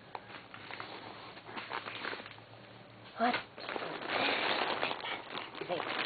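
Faint rustling and handling noises, with a louder patch of rustling about four seconds in, and a single spoken "What?" just after three seconds.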